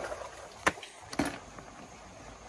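Snail shells dropped into a plastic bucket: two sharp clicks about half a second apart, over a low wash of stream water.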